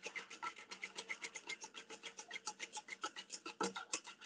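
Faint, rapid, even scraping strokes of cream being whisked by hand, several a second. The thickened cream is past the whipped-cream stage and being churned on toward butter.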